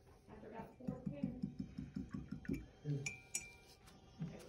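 A person's voice murmuring or humming in short, low, evenly spaced pulses. About three seconds in comes a light, glassy clink with a brief ring.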